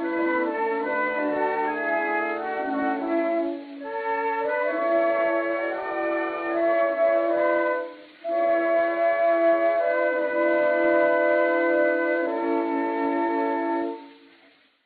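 Instrumental closing bars of an early acoustic disc recording: held wind and brass notes in a narrow, thin band. There are two brief breaks, about four and eight seconds in, and the music stops at the very end.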